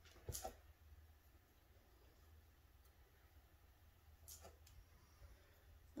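Near silence: room tone with a steady low hum. There is one brief soft sound about a third of a second in, and a couple of faint clicks after about four seconds.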